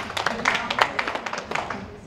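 Audience applauding: many hands clapping in a dense, irregular patter that thins out near the end.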